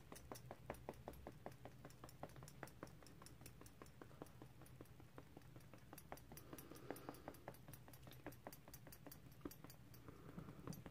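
Faint rapid dabbing of a makeup sponge against the skin of the face while blending foundation: soft short taps, about four or five a second.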